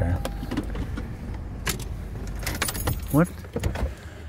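Car engine idling in a parked car, a steady low rumble heard from inside the cabin, with scattered clicks and small rattles. A short thin tone sounds at the very start.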